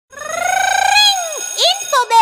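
A high-pitched voice-like call that rises over about a second and then falls away, followed by two short swooping notes near the end.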